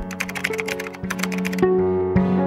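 Computer-keyboard typing sound effect, a quick run of clicks over background music with held notes; the clicks stop near the end and the music carries on.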